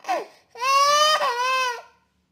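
A baby crying: a short, falling catch of breath, then one long, steady wail of about a second and a half.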